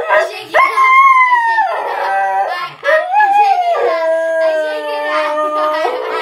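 Siberian husky howling in two long drawn-out notes: a higher one starting about half a second in and falling away before two seconds, then a longer one from about three seconds that sweeps down and holds steady until near the end.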